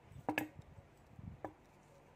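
Two light, sharp clicks from handling small crochet tools, about a third of a second and a second and a half in, just after the yarn has been snipped with scissors.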